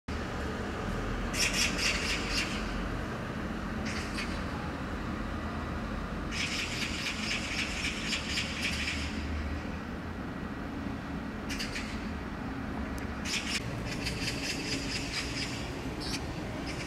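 Steady low rumble of distant city traffic, with several separate bursts of rapid, high-pitched chirping, each one to three seconds long.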